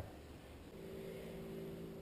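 A faint, steady motor or engine hum that sets in a little under a second in.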